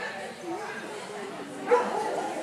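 A dog barks once, a short loud bark about three quarters of the way through, over steady background chatter of people in a large hall.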